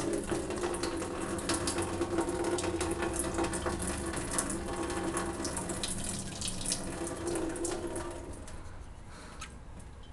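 Water pouring in a steady stream from a Contigo travel water bottle into a stainless steel kitchen sink as the bottle is drained. The pour thins and fades about eight seconds in.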